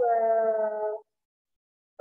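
A speaking voice holds one long, drawn-out vowel at a steady pitch for about a second, then cuts off abruptly to silence.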